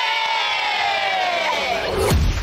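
A group of children shouting one long drawn-out cheer together, their high voices held unbroken and slowly falling in pitch.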